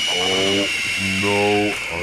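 A man groaning with strain in two long held notes, the second starting about a second in, under a steady high-pitched ringing tone that cuts off suddenly at the end.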